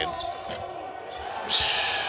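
Live basketball game sound: a ball bouncing on the hardwood court under a steady arena hum, with a short burst of hiss near the end.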